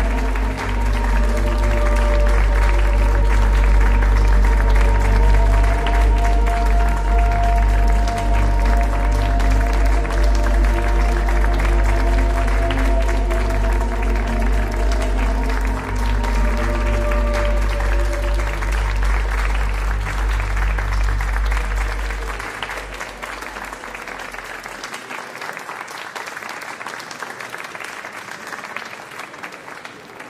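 Audience applauding over runway music with sustained chords and a heavy bass. The music fades out a little over twenty seconds in while the clapping carries on, then dies away near the end.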